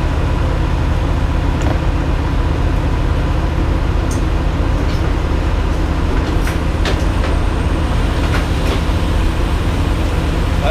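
Heavy diesel truck engine idling with a steady low hum. A few sharp clicks and clanks from a fuel nozzle and hose being handled sound through it.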